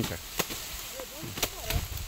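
Machete blows chopping through raw sugarcane stalks: two sharp chops about a second apart, with faint voices in between.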